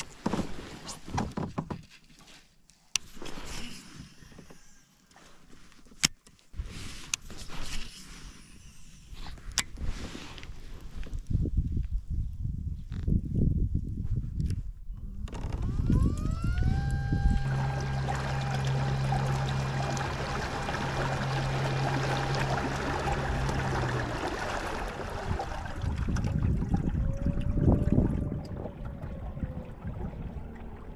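Scattered clicks and knocks, then an electric kayak motor, a Newport NK180, spins up with a short rising whine about halfway through and runs at a steady pitch for several seconds before cutting off; near the end the whine bends up and down again.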